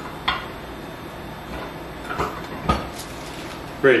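Cast iron tortilla press clunking as its heavy lid and handle are worked: a few separate sharp knocks, one just after the start and two more around two and a half seconds in.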